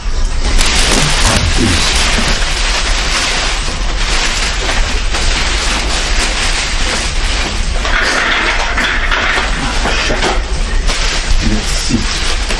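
Plastic wrapping crinkling and rustling, with cardboard rubbing, as a plastic-wrapped bike trailer is lifted out of its cardboard box and handled.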